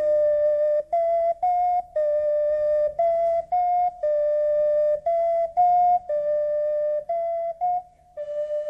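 Solo flute-like wind instrument playing a simple folk tune in short, separate notes, mostly stepping back and forth between two close pitches, a couple of notes a second.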